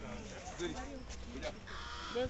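Indistinct voices of people talking, with a laugh beginning near the end.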